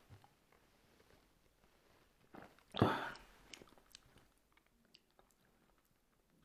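Quiet mouth sounds and lip smacking from a man who has just downed a shot of vodka, with a short voiced exhale about three seconds in. A few faint clicks follow as the empty shot glass is set down on the table.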